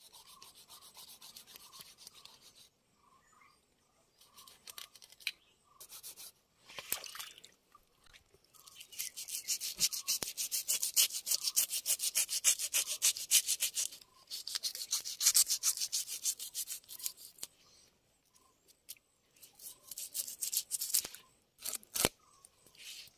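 A knife blade scraping the scales off a whole fish, a large catla for most of it, in fast, even, back-and-forth strokes. The scraping comes in several runs with short pauses between, the longest and loudest through the middle.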